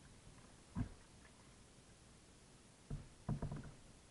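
Kayak paddle strokes on calm water, heard as a few short, soft sounds: one a little under a second in and a quick cluster near the end.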